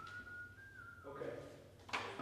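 Someone whistling softly, a thin tune of a few held notes that steps up in pitch partway through and fades out just after a second. A single sharp knock comes near the end.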